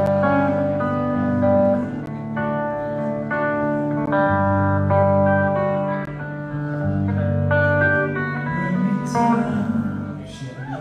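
Electric guitar fingerpicking a song intro: sustained chords over a low bass note, changing every second or two.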